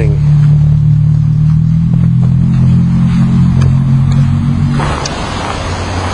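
A steady low rumble with a hum, then a louder rushing noise starting near the end.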